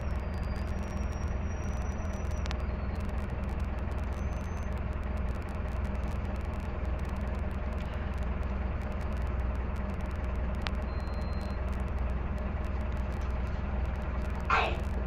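Mercedes-Benz OH-1115L-SB bus with its OM-904LA diesel engine running with a steady low rumble. A few faint high whistling tones come and go near the start and again about two-thirds through.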